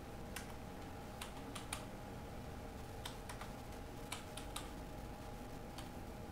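Typing on a computer keyboard: about a dozen faint, irregularly spaced keystrokes over a low steady hum.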